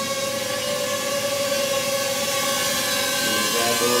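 Ryze Tello mini quadcopter's propellers and motors whining steadily as it flies, a steady tone with several higher pitches above it.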